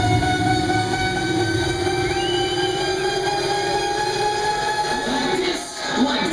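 Electronic dance music played loud over a club sound system, in a breakdown: long held synth chords with the heavy beat thinned out, and a short dip in level near the end.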